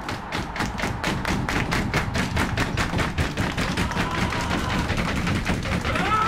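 A team's rapid, even rhythm of claps and stomps, about five beats a second, a victory drumroll building up to a cheer.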